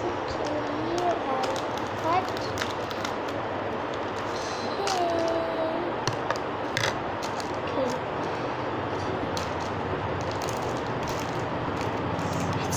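Scissors snipping a clear plastic pouch, then the plastic crinkling as it is pulled open: scattered sharp clicks and rustles over a steady background hiss.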